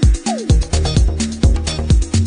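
Progressive house music from a DJ mix: a steady four-on-the-floor kick drum at about two beats a second, with a bass line and hi-hats. A short falling pitched sweep sounds near the start.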